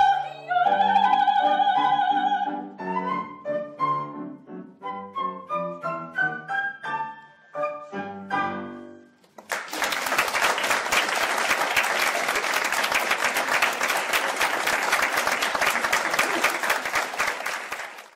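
Soprano, flute and piano finishing a classical piece: a held note with a falling glide, then a run of short notes. The music stops, and about nine and a half seconds in the audience starts applauding steadily.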